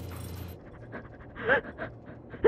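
A frightened woman's quick, shaky breaths, with a short whimper about one and a half seconds in.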